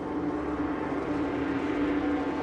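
A low, steady rumbling drone with one held tone, from the show's sound system as the two dinosaurs face off.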